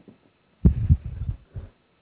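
A burst of low, dull thumps and rumble, starting sharply about half a second in and dying away after about a second.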